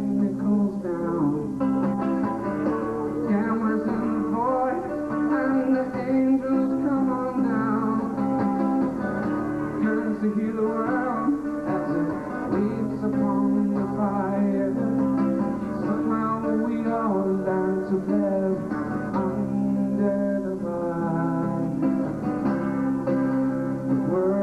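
A man singing while strumming an Alvarez acoustic guitar, sung melody over steady chords with no break.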